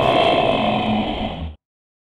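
A monster's roar voiced for the giant lizard, one long pitched roar that cuts off abruptly about one and a half seconds in.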